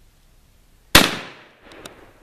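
A single .22-250 rifle shot about a second in, a sharp crack that trails off over about half a second, followed by a few faint clicks.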